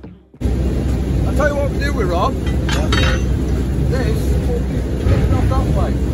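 Heavy plant machinery running with a loud steady low rumble, cutting in suddenly just under half a second in, with voices over it.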